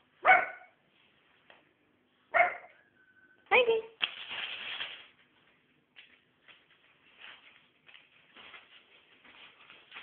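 Bedlington terrier puppy barking three times, short sharp barks a second or two apart, followed by faint rustling and crackling of newspaper.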